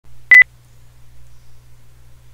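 A single short, loud electronic beep with a sharp click at its start, lasting about a tenth of a second, then a faint steady low hum.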